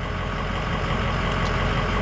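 A Ford 6.0 L turbo diesel engine idling steadily.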